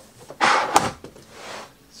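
A hard plastic Pelican 1606 carry case being slid and turned on a tabletop: a loud scrape about half a second in that ends in a knock, then a softer scrape.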